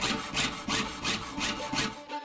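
Jeweler's saw blade cutting brass sheet by hand, in short even back-and-forth strokes about three a second.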